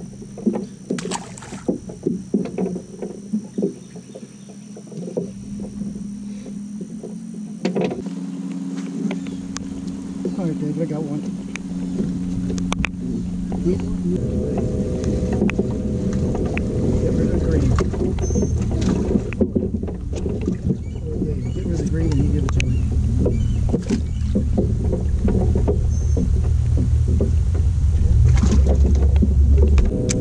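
Boat motor running with a steady hum that steps up in pitch about halfway through, while a low rumble builds toward the end. Small clicks and rattles of tackle being handled in the first few seconds.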